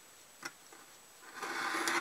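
Hobby knife blade slicing through soft foam on a cutting mat: a light tap about half a second in, then a scraping draw of the blade for about half a second near the end.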